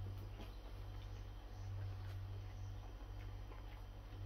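Faint chewing and small mouth clicks from a person gnawing a breaded chicken wing, over a steady low hum.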